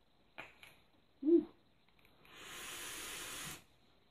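A vaper takes a draw through an Oumier VLS rebuildable dripping atomizer fired at 65 watts: a steady airflow hiss lasting about a second and a half, starting just past halfway. Before it come a couple of faint clicks and a brief low tone.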